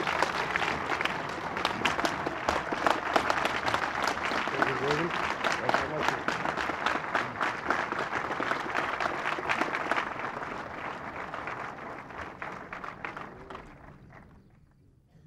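Crowd applauding with dense, irregular clapping, with a few voices among it; the applause gradually dies away over the last few seconds.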